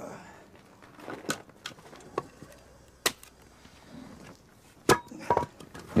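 A few sharp, separate knocks or clicks over a quiet background, the loudest about three and five seconds in.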